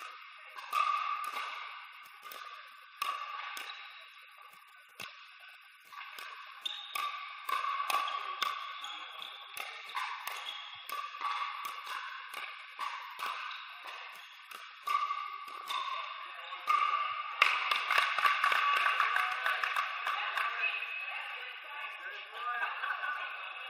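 Composite pickleball paddles striking a hard plastic outdoor pickleball in a rally, a string of sharp pops at uneven intervals, each ringing on in a large echoing hall. The hits come thicker and louder in the last few seconds.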